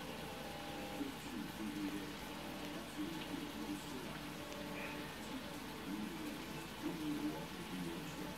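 Sliced mushrooms frying in a pan over a gas burner, a steady sizzle. Faint low voices come and go under it.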